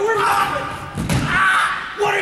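A heavy thud about a second in as a person drops onto a wooden stage floor, amid raised voices.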